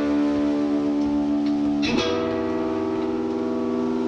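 Live rock band playing a song's instrumental intro: held guitar chords ring out, with a new chord struck about two seconds in.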